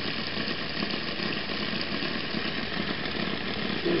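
Home-built Bedini SSG multi-coil radiant charger running, its four-magnet rotor spinning and the coils pulsing, with a steady, fast-pulsing mechanical hum. The machine is at full power, charging a 12 V battery that is nearing 14 volts.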